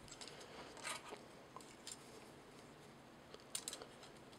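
Faint handling of a plastic action figure and its swords: light rubbing and small plastic clicks, one about a second in and a short cluster near the end.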